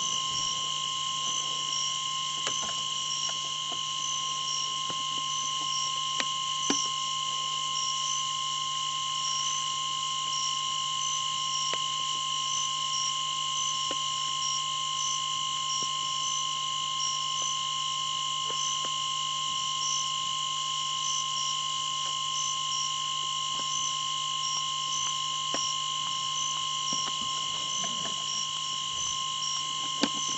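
Steady, high-pitched chorus of night insects, with a rapid pulsing trill over a constant shrill tone and a few faint clicks.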